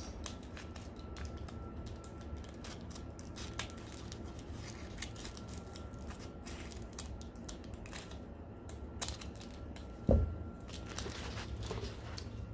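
Scissors snipping through a folded, double-layered aluminium foil tray: repeated sharp blade clicks with the crinkle of the foil. A single dull thump about ten seconds in.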